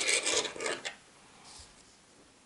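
Small metal charms clinking together and a hand rubbing over the paper table covering as a pendant is picked up, a few light clicks with scraping in the first second, then quiet.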